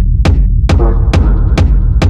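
Hypnotic techno track with a steady beat of about two hits a second over a deep, throbbing bass, and a short synth phrase about halfway through.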